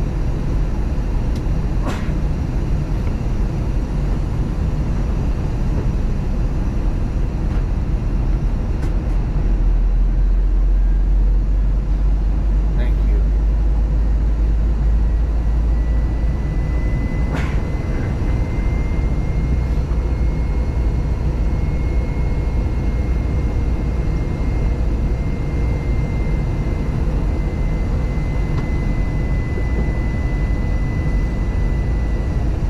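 Steady cabin noise inside an Airbus A321 on its approach: a low rumble of engines and airflow that swells heavier for several seconds in the middle. A faint steady whine joins about halfway through, and there are a couple of faint clicks.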